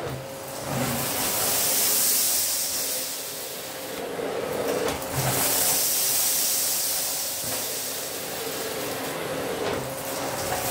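Philips Power Cyclone 4 XB2140 bagless canister vacuum cleaner running on its 850 W motor, with a steady whine under a strong suction hiss. The hiss swells and fades as the floor nozzle is pushed and pulled across a carpet, picking up scattered grains.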